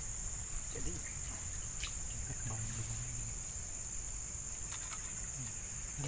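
Steady, high-pitched chorus of insects in tropical vegetation, running unbroken. A few faint sharp clicks of a knife on a board come through, about two seconds in and again near the end.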